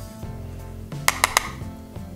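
Three quick, sharp plastic clicks about a second in, from a makeup compact and powder brush being handled as the powder is picked up for contouring, over steady background music.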